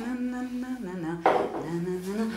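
A man speaking French, one drawn-out line of speech.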